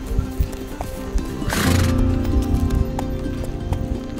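Horses walking with hooves clopping over grass, under background music with steady held tones. About a second and a half in comes a short, loud, noisy burst.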